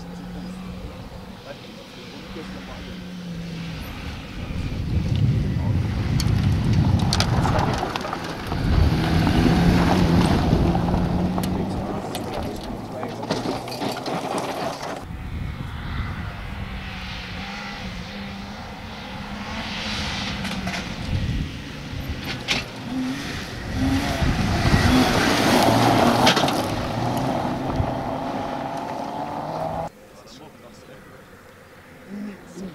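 Rally cars driven hard on a gravel stage, engines revving and changing pitch through the gears. Two cars pass in turn, loudest about a third of the way in and again near the end.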